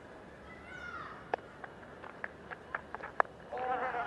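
Cricket stump-microphone sound during a delivery: a brief falling call, then a run of sharp irregular clicks, the loudest about three seconds in as the bat late-cuts the ball, and a voice calling just before the end.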